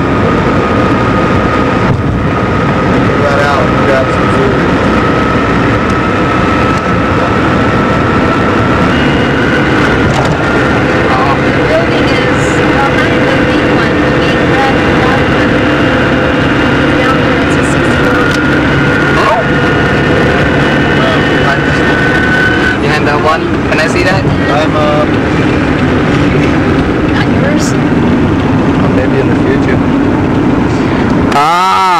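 Steady road and engine noise inside a moving car, with a faint whine that steps up in pitch about a third of the way in.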